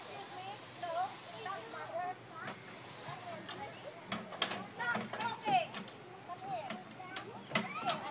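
Children's voices at a playground: scattered short calls and chatter, with a few light knocks in between.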